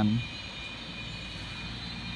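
Bus engine running at a distance as the bus pulls away, a steady low rumble with a constant thin high-pitched hum over it.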